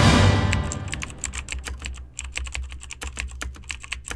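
Music fades out over the first second, then rapid computer-keyboard typing clicks run on, the typing sound effect for title text being typed onto the screen.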